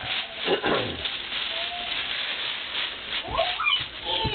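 Gift bag and tissue paper rustling and crinkling as a present is pulled out, with a few short sounds sliding in pitch: one falling about half a second in and one rising near the end.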